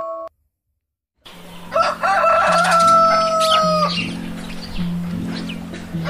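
A rooster crowing once, a cock-a-doodle-doo that rises in steps and ends on a long held note, over background music with a repeating low melody. The music cuts out for about a second just before the crow.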